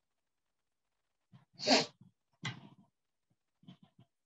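A person sneezing: one sudden loud sneeze a little over one and a half seconds in, followed by a second, weaker burst.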